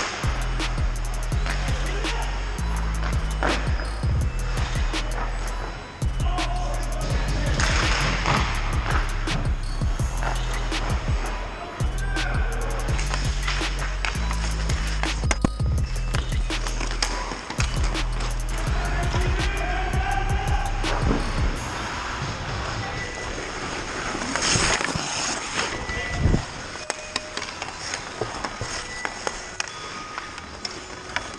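Ice hockey play: skate blades scraping the ice and sharp clacks of sticks and puck, over background music with a steady bass line that stops about two-thirds of the way in.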